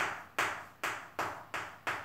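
Chalk tapping on a chalkboard while writing: six short, sharp taps at a fairly even pace of two to three a second, each dying away quickly.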